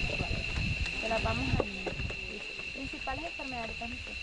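Indistinct voices of people talking, over a steady high-pitched whine.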